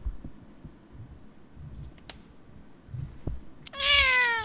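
Soft low thumps and rumble, then near the end a domestic cat meows once, loudly, the call falling slightly in pitch.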